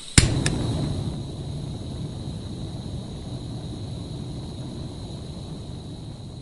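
A cinematic impact hit for a logo reveal: a sharp strike, a second smaller click just after, then a low rumbling tail that slowly fades, over a faint steady high tone.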